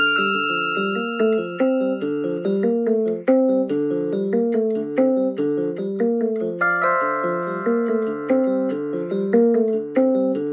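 Portable electronic keyboard played with both hands: a steady stream of broken chords in the middle register, with higher notes held over them at the start and again from about seven seconds in.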